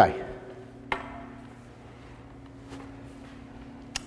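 A single sharp knock about a second in, then a steady low hum of room tone with a couple of faint ticks.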